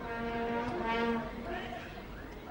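A horn blown by a spectator in the stadium, one steady low note held for just over a second, over faint background noise.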